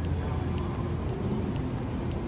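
Steady low rumble of ambient noise on a train station platform, with faint, regular footsteps about two a second from someone walking.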